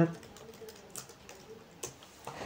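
Computer keyboard being typed on: a handful of separate keystrokes, spaced out rather than in a fast run.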